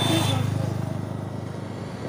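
A motor vehicle's engine running with a low, even pulse and fading away as it passes on the road. A short, high, steady beep sounds right at the start.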